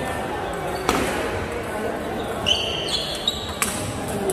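Celluloid-style table tennis ball clicking off rubber paddles and the table during a serve and rally: a few sharp, separate taps. A short high squeak comes about halfway through, along with the loudest tap.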